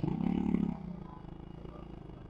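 Motorcycle engine revving hard in a short burst as it pulls forward, then running on more quietly at a steady pace.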